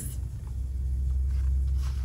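A steady low background rumble, with the faint rustle of a picture-book page being turned near the end.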